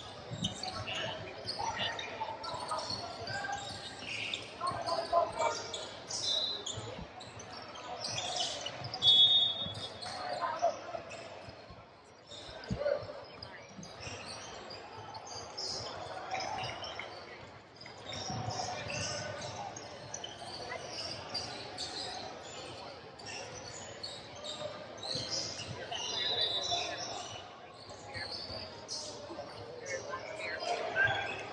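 Basketball bouncing on a hardwood gym floor during a game, with indistinct voices of players and spectators echoing in a large gym. Two short high squeaks cut through, about a third of the way in and near the end.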